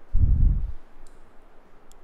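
A low thud and brief rumble of handling noise on the camera's microphone, followed by a couple of faint small clicks.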